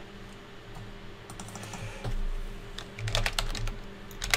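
Typing on a computer keyboard: a few scattered keystrokes, then a quicker run of keys near the end.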